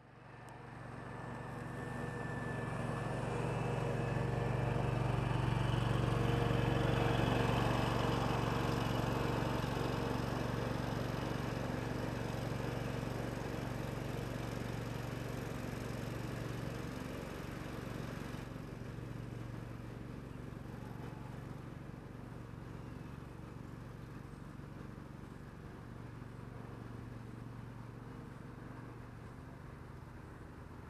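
Stiga Park front-deck ride-on mower's engine running steadily. It swells over the first few seconds, then eases off and turns duller about 18 seconds in.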